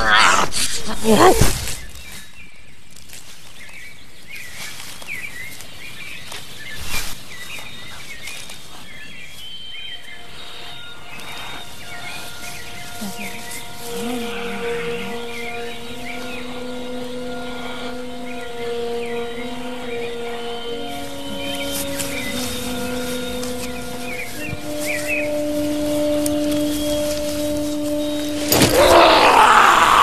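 Woodland birdsong chirping over quiet forest ambience. About ten seconds in, soft film score joins with long held notes that shift slowly from pitch to pitch. A loud outburst opens the stretch and another loud burst comes near the end.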